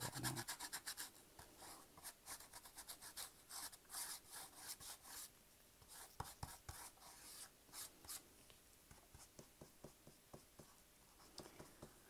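Stiff paintbrush bristles scratching faintly across miniature wooden floorboards in quick back-and-forth strokes, several a second, thinning out after about eight seconds: dry-brushing white acrylic paint to bring out the detail of the wood.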